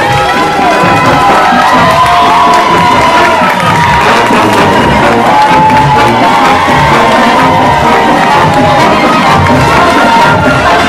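Crowd of spectators cheering and shouting, with many high voices sustained over several seconds and music playing underneath.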